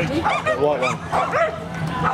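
Flyball dogs barking and yipping in quick succession, about three or four barks a second, with the high excitement typical of dogs waiting in or running the lanes during a race.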